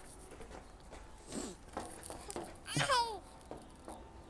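A toddler babbling: a short vocal sound about a second in, then a high squeal that glides down in pitch near the three-second mark, with a few faint taps in between.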